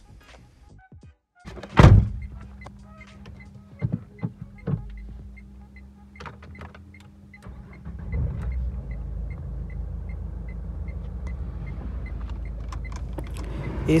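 The 1461 cc four-cylinder dCi diesel engine of a 2012 Renault Duster is started, heard from inside the cabin. There is a short loud burst as it cranks and catches about two seconds in, then it settles to a steady idle. The idle becomes louder and heavier past the halfway point.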